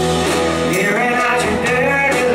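Live band playing: strummed acoustic guitar, electric guitar and bass, with a man's lead vocal coming in about a second in.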